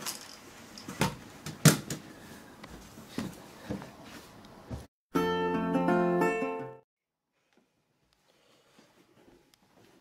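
A few sharp knocks and thumps, the loudest about two seconds in, as a stick is swung in a mock fight. About five seconds in comes a short music cue of under two seconds that stops abruptly, followed by near silence.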